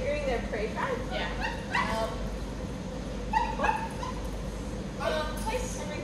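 A dog whining, a run of short high whimpers that rise and fall in pitch in the first second, then a few more whines and yips through the rest.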